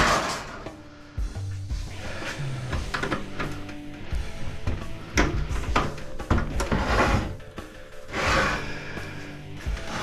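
Background music with steady low held tones. Over it come knocks and scraping from the sheet-metal case of an opened microwave being handled and tipped on a workbench, loudest about 7 and 8.5 seconds in.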